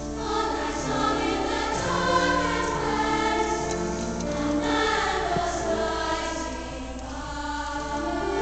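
A girls' choir singing in harmony, with long held notes.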